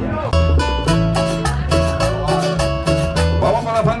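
Upbeat plucked-string music, guitar-led with a driving bass line, backing a Colombian trova paisa act, starting abruptly about a third of a second in. A man's amplified voice calls out over it near the end.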